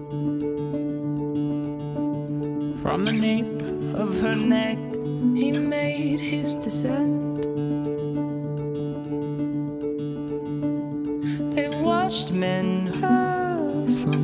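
Song with acoustic guitar and held notes, a voice singing short phrases a few times.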